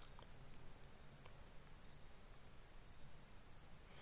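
Quiet background hiss with a faint, steady, high-pitched pulsing trill repeating rapidly and evenly.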